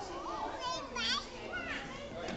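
Young children's voices as they play, with high calls and a shrill child's cry around the middle.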